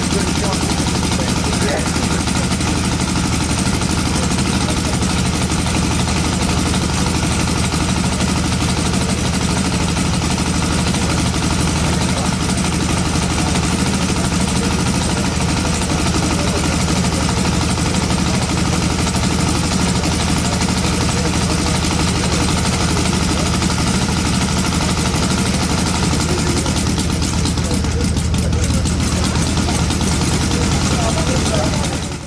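Miniature hand-built V8 aircraft engine running steadily at one constant speed, driving its propeller.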